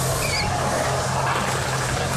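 Skateboard wheels rolling on the concrete of a skate bowl, a steady rumbling noise, with a steady low hum underneath.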